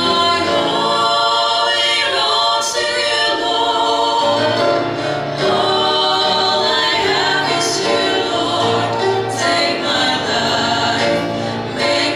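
Three women singing a gospel worship song together into microphones, their voices held in long sustained notes.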